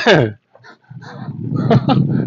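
A man's voice: the tail of an excited exclamation, then a brief pause and breathy laughter building in the second half.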